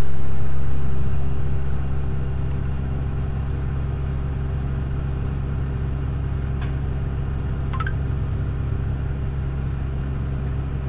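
Tractor engine running steadily, a low even hum heard from inside the cab, while the disk's wings are folded up. Two faint ticks come in the second half.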